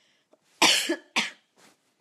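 A woman coughing: two hard coughs about halfway through, the first the loudest, then a faint third. It is a lingering cough that she says still hasn't gone away.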